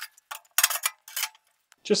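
Steel tuning plate of an offset smoker clinking and scraping against the metal grate and chamber as it is set into place at the firebox end. It makes a quick run of light metallic clicks in the first second or so, then stops.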